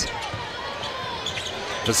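A basketball being dribbled on a hardwood court over steady arena background noise, as heard on a TV game broadcast.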